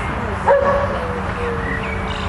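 A dog whining: one long, thin whine that starts about half a second in and slowly falls in pitch.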